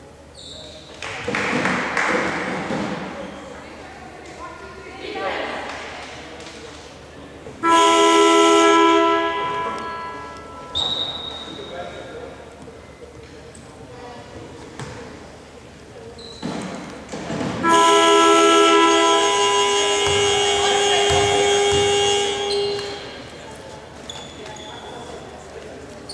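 Arena game horn sounding twice in a large hall: a short blast of about two seconds near eight seconds in, then a longer blast of about five seconds near eighteen seconds, as the timeout clock runs out, signalling the end of the timeout.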